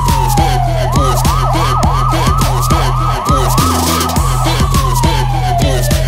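Electronic police siren: a falling wail, then a fast yelp of about three sweeps a second, then falling again near the end, over hip hop music with a steady beat.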